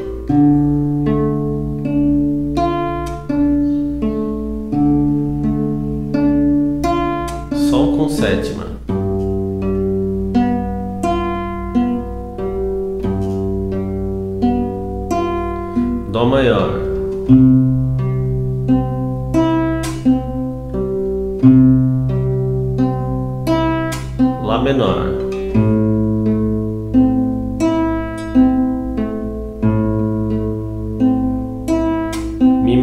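Nylon-string classical guitar fingerpicked slowly in a 6/8 arpeggio pattern: a bass note with the thumb, then the treble strings one after another. It moves through D minor, G7 and A minor chords, the chord changing about every eight seconds.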